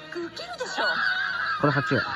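Voices and laughter from a TV drama clip playing through a smartphone speaker, with brief chuckling near the end.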